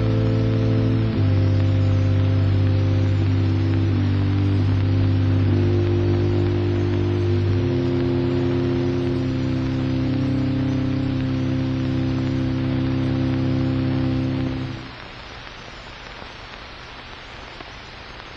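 Slow background music of long, steady held chords that change every few seconds and stop abruptly near the end, leaving only a steady hiss.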